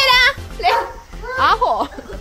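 High-pitched voices calling out in short excited bursts, the loudest with a wavering pitch at the very start, over background music.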